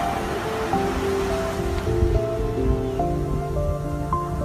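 Ocean surf washing onto a sandy beach, a steady rush of breaking waves, heard under background music with slow, held notes.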